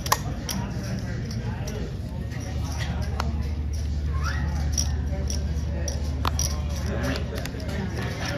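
Casino table ambience: voices talking in the background over a steady low hum, with scattered clicks of cards and chips being handled. The sharpest click comes just at the start.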